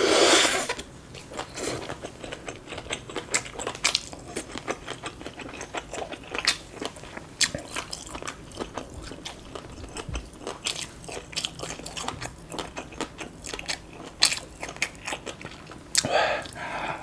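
Close-miked chewing of crunchy shredded green papaya salad and sticky rice: many short, crisp crunches and wet mouth clicks, loudest right at the start.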